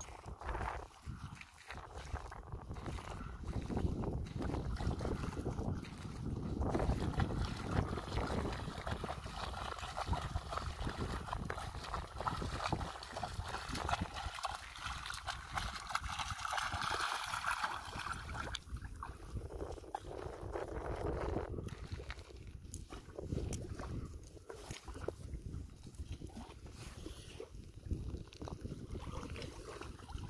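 Shallow seawater sloshing and splashing as a German shepherd wades through it along the shoreline.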